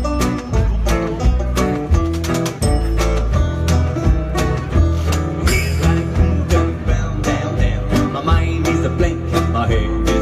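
Live acoustic band playing an instrumental break: banjo, upright double bass slapping out a steady beat, and strummed and picked acoustic guitars. A singer shouts "Hey" at the very end as the vocals come back in.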